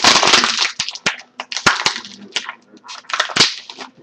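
An empty disposable plastic water bottle being crushed and twisted by hand: loud crackling and crunching of the plastic, densest in the first second, then coming in irregular bursts of pops.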